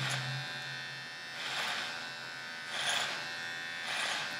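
Electric hair clippers buzzing steadily as they shave off a thick beard. Three times the sound swells into a brief rasp as the blades are dabbed into the hair.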